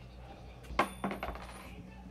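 A sharp metallic clink about a second in, followed by a short jingling rattle of small metal objects that rings briefly, over a steady low hum.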